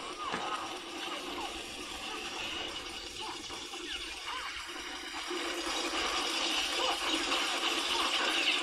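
An animated fight scene's soundtrack plays quietly in the background: energetic music mixed with scattered swishes and hits.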